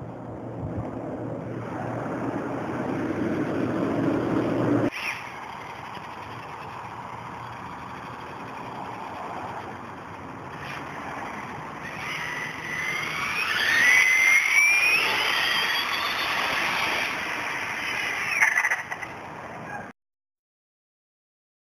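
Brushless electric motor of an OFNA GTP on-road RC car on a high-speed run: a high whine that climbs in pitch, is loudest about two-thirds of the way through, then falls away, over a steady rush of noise. The background noise changes abruptly about five seconds in.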